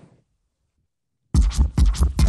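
Near silence for over a second, then a hip-hop beat drops in with a heavy kick drum and turntable scratching.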